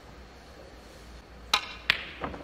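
Two sharp clicks of snooker balls about a third of a second apart near the end: a break-off shot, the cue striking the cue ball and the cue ball then clipping the pack of reds.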